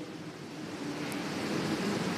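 Low steady hiss of room and microphone noise, slowly growing a little louder, with no clear event in it.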